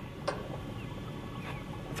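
A pause between words with faint outdoor background: a steady low rumble, one short click about a quarter second in, and a faint high chirp around the middle.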